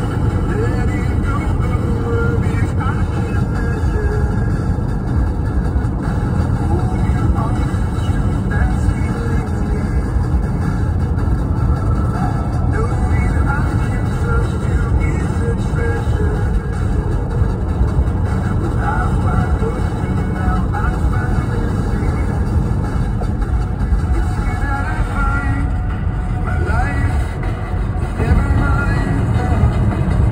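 Steady low road and engine rumble inside a moving car at highway speed, with music playing over it.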